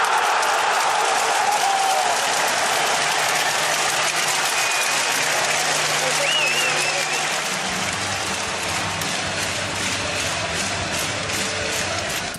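Ice hockey arena crowd cheering and applauding a goal, a steady wash of noise. Low steady music from the arena's sound system comes in about two-thirds of the way through.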